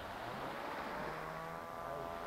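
Fiat Ducato camper van's engine running under throttle, a steady drone that climbs slightly in pitch from about a second in, as the driver tries to pull the van out of soft sand it is stuck in.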